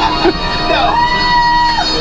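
Simulator ride soundtrack music playing loudly in the cockpit, with a rider's drawn-out shout of "No!" held for about a second in the middle.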